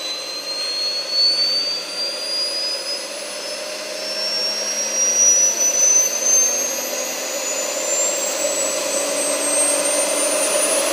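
Small gas turbine engine of a Hoss Fly Turbine bar stool running, its high whine climbing steadily in pitch as it spools up. A rushing roar underneath grows louder.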